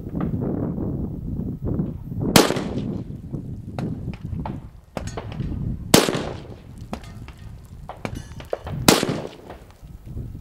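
Three rifle shots from a .260 Remington GA Precision AR-10, spaced about three seconds apart, each a sharp crack with a short echo dying away after it.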